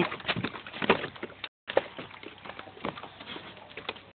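Scattered light knocks and clicks of hands and a small fish against a plastic kayak's deck and hatch rim as the fish is pushed into the hatch, over a faint steady background. The sound cuts out completely for a moment a bit past a second in.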